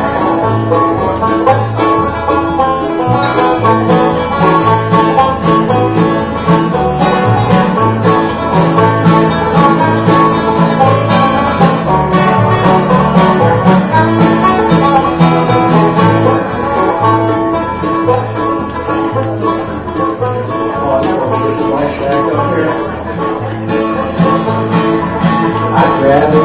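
Acoustic bluegrass band playing an instrumental break without singing: strummed acoustic guitar, an upright bass plucking a steady low line, and a picked lead string instrument carrying the melody.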